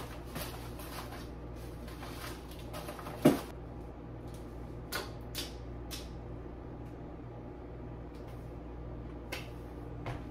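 Kitchen items being put away in wooden cabinets: a few scattered knocks and clinks as things are set on the shelves and the cabinetry is handled, the loudest knock about three seconds in, over a steady low hum.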